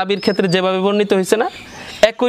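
A man's voice speaking, drawing out one long, steady-pitched word for about a second, then pausing near the end.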